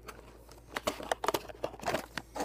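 Cardboard box being handled and its flaps folded shut: a run of short scrapes and clicks that starts about three-quarters of a second in.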